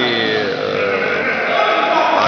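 A man's voice drawing out a long vowel, a hesitation sound held in the middle of a sentence, its pitch sinking slowly.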